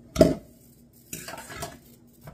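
A metal frying pan clanks down sharply with a short ring, then dishes and cutlery clatter for under a second near the end.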